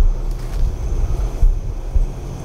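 Low, rumbling wind-like noise on the microphone with a few dull thumps, about one and a half and two seconds in.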